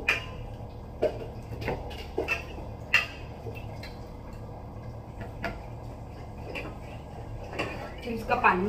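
A metal spoon clinking against the inside of an aluminium pressure cooker as boiled potatoes are lifted out: about nine separate sharp clinks, the loudest about three seconds in, over a low steady hum.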